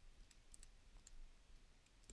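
Near silence, with a few faint ticks of a stylus writing on a tablet screen.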